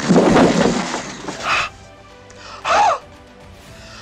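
People's voices from a film scene: a loud rasping gasp in the first second, then two short voiced exclamations with a bending pitch, about 1.5 and 2.8 seconds in.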